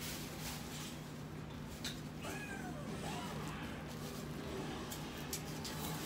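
A cat meowing, with a curved, falling call about two seconds in, while a large shopping bag rustles as it is handled; a low steady hum runs underneath.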